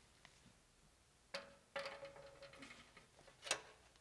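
Faint handling noises of a music stand being adjusted: a knock a little over a second in, a short rattling scrape with a brief squeak, then a sharp click near the end.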